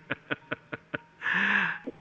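A man chuckling close to a microphone: a quick run of short breathy huffs, then one longer, louder voiced laugh about a second in.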